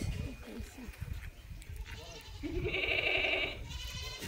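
A goat bleating once: a long, wavering bleat starting about two and a half seconds in and lasting about a second.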